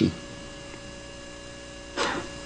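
Steady electrical mains hum from the microphone and sound system, with several faint steady tones above it. The tail of a spoken word fades out just at the start.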